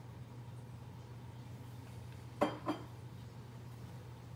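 Quiet room with a steady low hum, broken about two and a half seconds in by two short clicks a third of a second apart.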